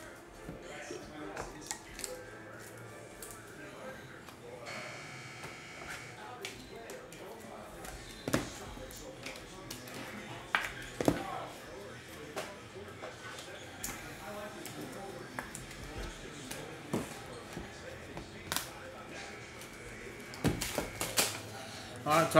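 Quiet background music with scattered light taps and clicks of trading cards in plastic holders being handled on a table.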